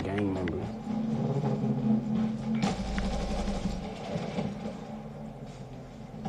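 A man's voice, low and indistinct, over a steady low hum, with a single soft knock about two and a half seconds in.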